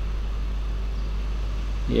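Steady low-pitched hum with a faint hiss above it, unchanging, with no distinct events: the background tone of the voice-over recording.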